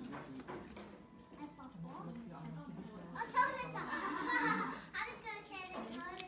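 Background voices, children's among them, talking and calling out in a room; a high child's voice is loudest from about three to five seconds in.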